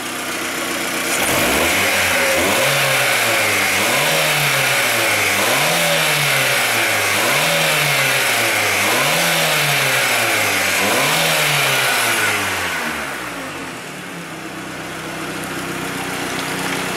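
Volkswagen Gol's AP four-cylinder engine revved by hand at the throttle linkage. It rises and falls about seven times, roughly every second and a half, then settles back to idle near the end. The revving drives the rinse water through the cooling system during a radiator flush.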